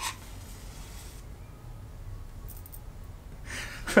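A wooden match struck against the striker of a small matchbox: a soft scratchy scrape, then a few faint light strikes. The match is slow to catch, and a faint hiss rises near the end as it lights.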